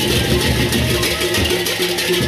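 Sasak gendang beleq gamelan playing: large hand cymbals clash in a fast, dense rhythm over low drums, with a few held pitched tones.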